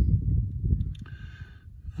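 Low rumble of wind buffeting the microphone, with some handling noise, fading about a second in.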